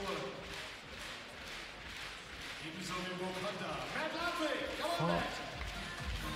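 A voice talking in the background of a large indoor hall, with a few faint knocks in the first second.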